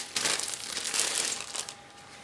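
Crinkling and rustling of plastic packaging as a plastic model-kit sprue is handled, fading out near the end.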